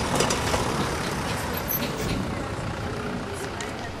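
Busy street ambience: steady traffic noise with people's voices mixed in. It starts suddenly, straight after a cut.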